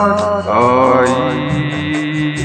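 A solo singing voice holding and bending a long note of a Hindi film song over steady backing music; the voice trails off about a second in, leaving the sustained backing.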